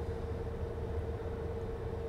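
Steady low rumble inside a car's cabin, with a faint constant hum.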